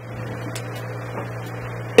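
A steady low electrical hum in the microphone's sound system, unchanging through a pause in the talk.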